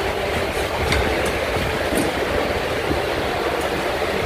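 A steady, loud rumbling noise with a dense hiss over it.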